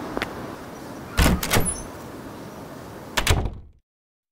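Door sound effect: a door opens with a double clunk about a second in and shuts with another double clunk about three seconds in, over a steady background hiss that fades out just before the end.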